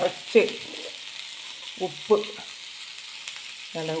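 Chopped amaranth leaves (cheera) sizzling as they fry in a nonstick pan, a steady hiss throughout.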